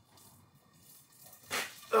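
A man's strained "ah" of effort at the very end, as he hauls a heavy cast-iron pot out of a Russian stove with an oven fork. It follows a mostly quiet stretch with a short rasping noise about one and a half seconds in.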